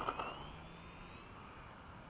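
RC Gee Bee model plane's electric motor and propeller passing close by on a low pass: a short loud burst right at the start, then a thin whine that rises in pitch and fades as the plane climbs away.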